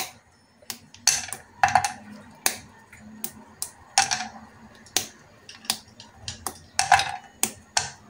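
Squares of a milk chocolate bar snapped off by hand and dropped into a small granite-coated saucepan: a string of irregular sharp snaps and clicks, two or three a second.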